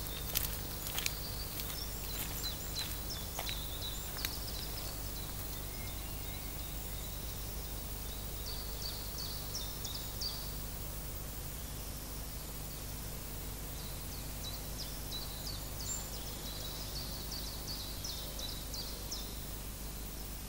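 Quiet countryside ambience: clusters of high chirps come in two spells, around eight seconds in and again from about fourteen to nineteen seconds, over a steady low hum and hiss. A few faint clicks sound in the first few seconds.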